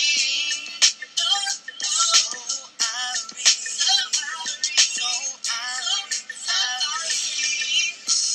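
A hip-hop track playing: a sung vocal line wavers in pitch over a beat with sharp percussive hits. There is almost no bass.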